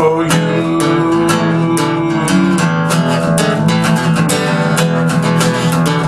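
Acoustic guitar strummed with a pick in a steady rhythm, chords ringing under the strokes.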